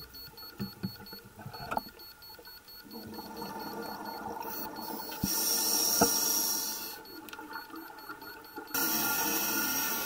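Underwater ambience: rushing, gurgling water and bubble noise with a few sharp clicks, changing suddenly in character several times.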